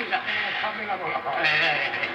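A man's wavering, bleat-like wordless vocalising from a vintage comedy record played on a turntable.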